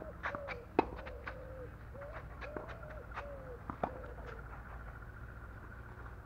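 A dove cooing over and over, a run of short, arching coos that stop about four and a half seconds in. Sharp knocks come through the cooing, the loudest about a second in, fitting a tennis racket striking the ball.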